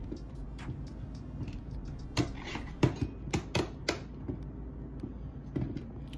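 Half a dozen sharp clicks and taps between about two and four seconds in, over a faint low steady hum: something being handled close to the microphone.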